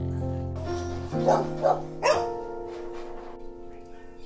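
Background music of held keyboard notes, with a dog barking three times in quick succession about a second in.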